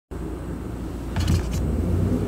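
A steady low rumble in the background. About a second in, a few short scraping and handling sounds come as hands take hold of dyed gym-chalk blocks in a plastic bowl.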